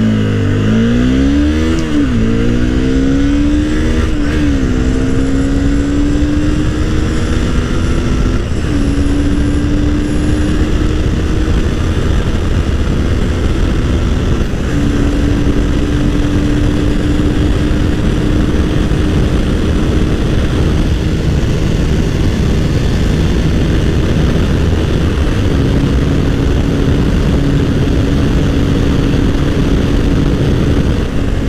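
Honda CBR250R's single-cylinder 250 cc engine accelerating hard from a first-gear launch. The revs climb and drop with quick upshifts in the first few seconds, then the engine holds a steady high-speed drone near its top speed of about 140 km/h, with heavy wind rush over it.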